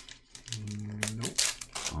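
Foil wrapper of a Magic: The Gathering collector booster pack crinkling and tearing open in quick sharp rustles. In the middle a man hums a short steady 'mm'.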